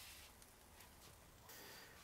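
Near silence: a faint steady hiss.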